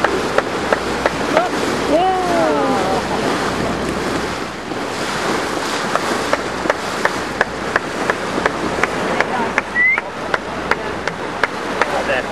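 Sea water rushing and splashing against a moving boat's hull, with wind on the microphone. A run of sharp clicks runs through it, and there are a few short rising-and-falling vocal glides, the clearest about two seconds in.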